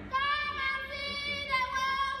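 Children's voices singing in long held notes, a new note taking over about three quarters of the way through.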